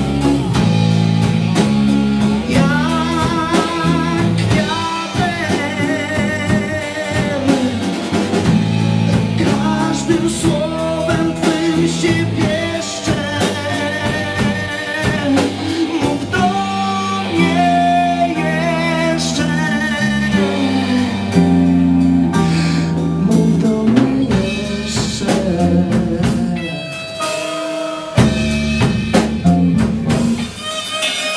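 Live rock-blues band playing: a voice sings a melody with vibrato in Polish over bass guitar, drum kit and guitar.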